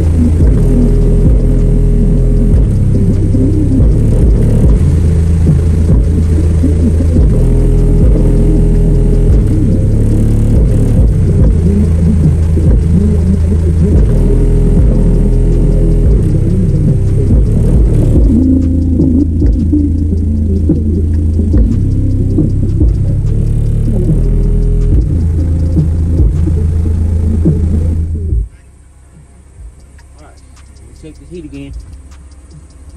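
Bass-heavy music played loud through a single car subwoofer in a plywood box, not at full power. A deep bass line steps between low notes, with little treble, and it cuts off suddenly near the end.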